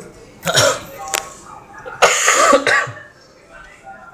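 A person coughing twice: a short harsh cough about half a second in, then a longer, louder one about two seconds in.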